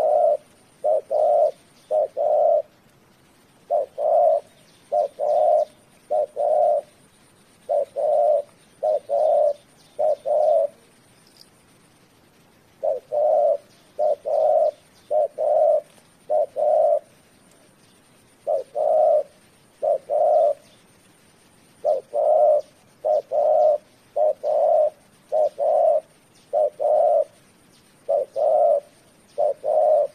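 Spotted dove cooing over and over in phrases of three or four low coos, with short pauses of one to two seconds between phrases.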